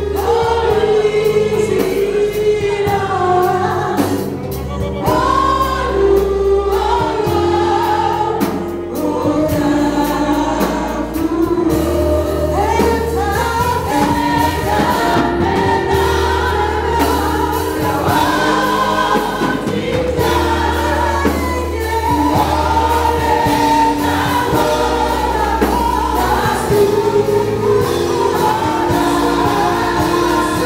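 A congregation singing a gospel praise song over instrumental accompaniment, with deep held bass notes that change every couple of seconds.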